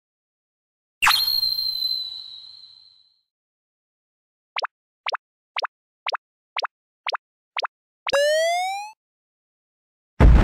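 Cartoon sound effects for an animated logo. About a second in comes a sharp, bright chime-like hit whose high tone rings out and fades over two seconds. Then come seven quick double blips about half a second apart, and near the end a short rising tone.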